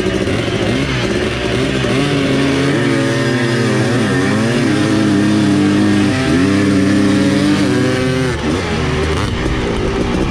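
Onboard 1983 Honda CR480R's single-cylinder two-stroke engine accelerating hard off the start line, with other motorcycles running alongside. The pitch climbs and drops back several times as the rider works the throttle and shifts up through the gears.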